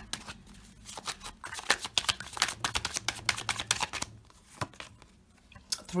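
A deck of tarot cards being shuffled by hand: a rapid run of crisp card-edge flicks that thins out and quietens about four seconds in.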